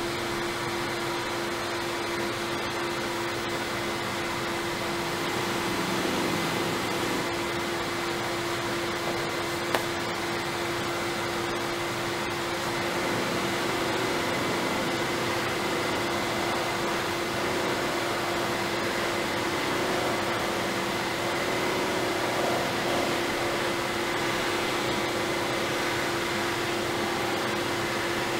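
Woodturning lathe running steadily with a cloth buffing mop on its spindle, a wooden platter held against it to buff with white compound: a steady hum and whirr, with a single click about ten seconds in.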